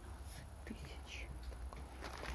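Faint whispering: a few short, hushed hisses over a steady low background hum.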